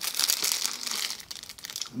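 Clear plastic bag crinkling as it is handled, busiest in the first second and dying down toward the end.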